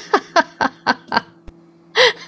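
A woman laughing in a string of short 'ha' bursts, each falling in pitch, about four a second, over a faint steady hum.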